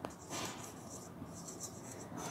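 Marker pen writing on a whiteboard in a series of short, faint strokes.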